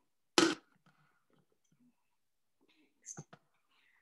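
Thermomix lid with its measuring cup set back onto the mixing bowl: one short plastic clunk about half a second in, then a few small clicks near the end.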